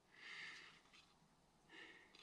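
A man's soft breath, a short hissy exhale or intake in the first half-second, then a fainter breath-like sound near the end; otherwise near silence.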